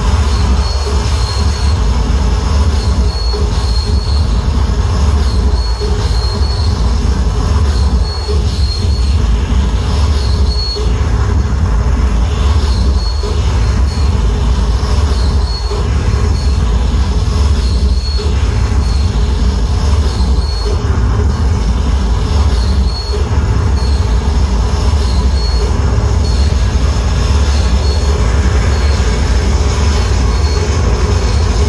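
Harsh noise played live on a table of electronics and effects units: a loud, unbroken wall of distorted noise with a heavy low rumble and a high squeal that pulses on and off on top.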